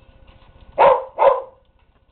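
A dog barking twice in quick succession, two loud barks about half a second apart.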